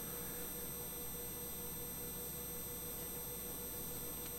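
A pause with only faint, steady electrical hum and a thin, unchanging tone under low background noise: room tone from the microphone and sound system.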